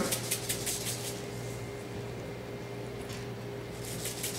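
A hand-held spice shaker of coarse dry rub being shaken over meat, the granules rattling in quick repeated shakes for about the first second, pausing, then shaking again near the end.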